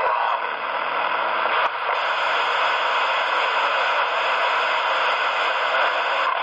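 Steady static hiss from a CB radio's speaker, with no voice on the channel.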